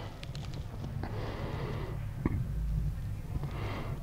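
A man breathing slowly and deeply, soft airy breaths over a low room hum, with one faint click about two seconds in.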